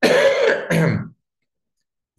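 A man coughing to clear his throat: two quick bursts within about the first second, then silence.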